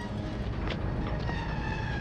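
Low, steady rumble of a loaded mine cart's iron wheels rolling along rails as it is pushed by hand, with faint steady tones over it.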